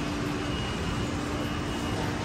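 Steady ambient noise of a large warehouse store: an even rumble with a faint steady hum running through it.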